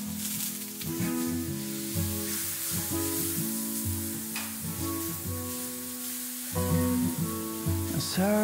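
Beech mushrooms (shimeji) sizzling in a frying pan on a gas burner as they are stirred with a wooden spatula, with instrumental music playing over it.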